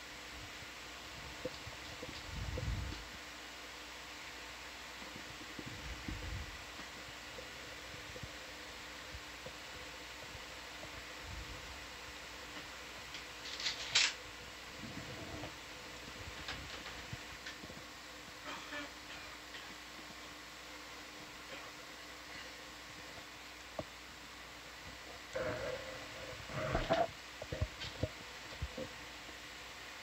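Steady hum of equipment fans in a control room, broken by a couple of soft low thumps a few seconds in, one sharp click about halfway through, and a cluster of small knocks and clicks near the end.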